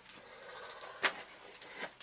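Paper vacuum dust bag rustling faintly as it is handled and pushed into the bag compartment of a Miele upright vacuum, with two light taps about a second in and near the end.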